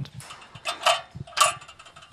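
A few short mechanical rattles or scrapes, about half a second apart.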